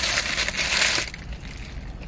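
Paper burger wrapper crinkling as it is handled, densest and loudest in the first second, then quieter with a few small clicks.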